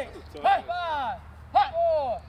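Short, high-pitched shouts from people, four calls in quick succession with pitch rising and falling, over a faint low background hum.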